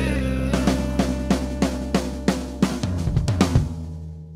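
Closing bars of a funky blues-rock song: the drum kit plays a run of bass and snare hits, about three a second, over a held bass note and chord that slowly fade out.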